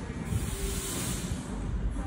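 Steady background room noise, a low rumble with a faint hiss, and no distinct events.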